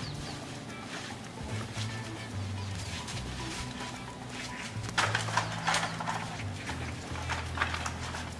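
Background music with a low, stepping bass line, with a cluster of sharp knocks about five to six seconds in.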